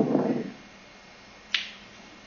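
A voice trails off in the first half-second, then a single sharp click about one and a half seconds in.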